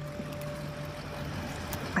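Soft background score holding a single quiet note over a steady rushing noise bed, the note fading out about a second and a half in.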